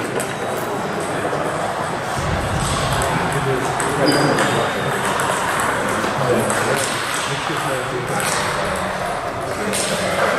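Table tennis balls clicking off tables and paddles in games around the hall, over steady background chatter of indistinct voices.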